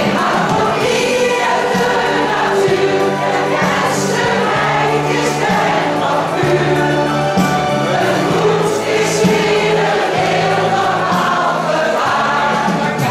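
A large mixed choir, mostly women's voices, singing a song together, with sustained notes that change every second or so.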